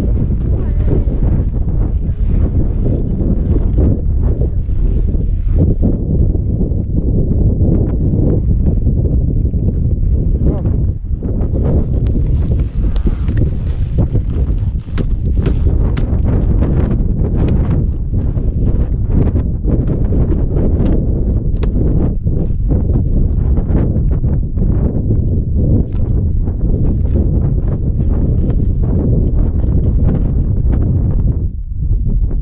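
Wind buffeting a helmet-mounted action camera's microphone as a loud, steady low rumble, with frequent short clicks and knocks of skis and poles on snow as the skier shuffles slowly along.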